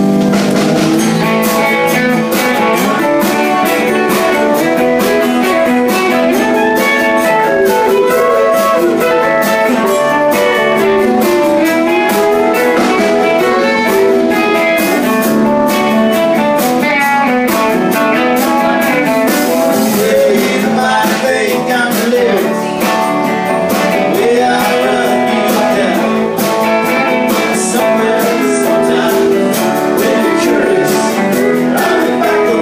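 A live rock band playing a song: drum kit, electric and acoustic guitars and keyboard, with a sung vocal over them, heard from among the audience.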